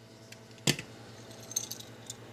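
One sharp metallic click, followed about a second later by a few faint light clinks: the treble hook and split ring of a metal fishing jig knocking as the jig is lifted and handled.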